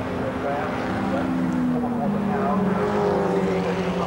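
Engines of historic racing sports cars, among them a Mercedes-Benz 300 SLS and an Austin-Healey 100S, running at race speed: a steady engine drone whose pitch drifts slightly as they pass.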